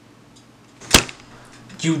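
A playing card slapped down onto a pile of cards: one sharp slap about a second in.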